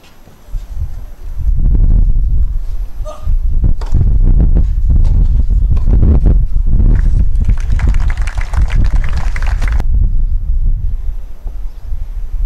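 A tennis point on a clay court: racket strikes on the ball, heard over a loud, fluctuating low rumble on the microphone that swells about a second and a half in and eases off near the end.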